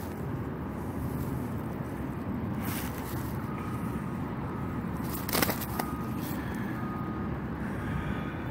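Steady low outdoor rumble with no clear source, broken by a short scrape about two and a half seconds in and a sharper click a little past five seconds.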